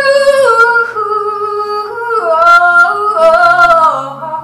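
A woman's wordless vocal line, sung or hummed in held notes that step up and down, over acoustic guitar accompaniment.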